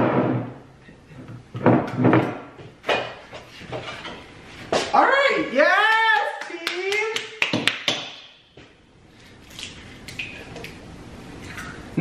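Voices making wordless sounds that rise and fall in pitch around the middle, mixed with a few sharp taps and clicks in the latter half.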